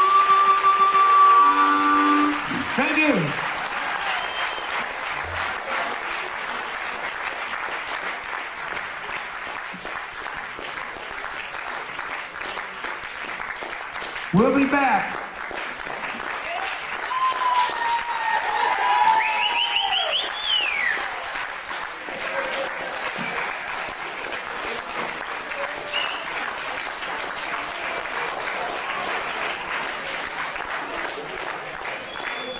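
A harmonica holds a final chord that stops about two seconds in. Audience applause follows, with scattered cheers and shouts from the crowd.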